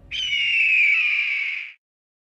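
A bird-of-prey screech sound effect: one long, harsh cry of about a second and a half that drops slightly in pitch and cuts off sharply.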